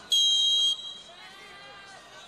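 Referee's whistle on a football pitch: one short, loud, steady blast of just over half a second, signalling the kickoff that restarts play after a goal. Faint voices follow.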